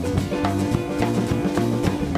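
Live band playing an instrumental passage of a song: drum kit keeping a steady beat under guitars and bass.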